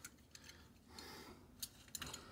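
Near silence with a few faint clicks and taps as a small diecast toy truck is handled against an acrylic display case.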